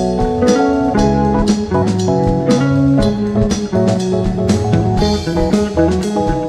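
Live jazz band playing an instrumental passage: electric bass, keyboards and drum kit, with a steady beat marked on the cymbals.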